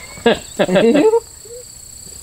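Crickets chirring steadily in a high, unbroken drone, with a man's laughing voice over it during the first second.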